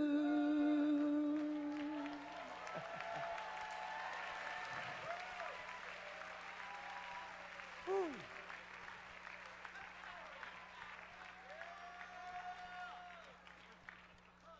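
A worshipping congregation's many voices overlapping, singing out and calling, over a haze of clapping. One voice holds a long note at the start, and a sharp cry falls in pitch about eight seconds in. It all fades toward the end.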